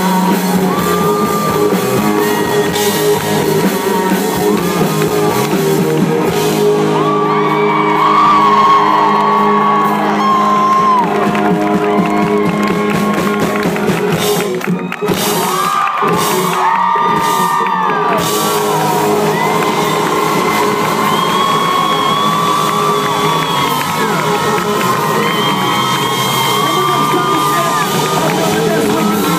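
Live country-rock band playing loudly, electric guitar over drums and bass, with fans in the crowd whooping.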